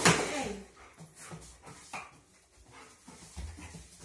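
A dog sniffing at scent boxes in short quick snuffles while searching for a target odour, with one louder, short sound from the dog, falling in pitch, right at the start.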